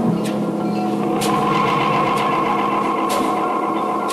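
Accompanying music for a dance: sustained droning tones held under a light, sharp percussive hit about once a second.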